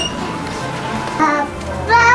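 A young child's brief high-pitched vocal calls: a short one a little past a second in, and a longer one that rises and falls starting near the end.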